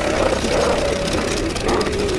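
Film sound of a small propeller plane's engine running steadily, with a wavering tone over the noise.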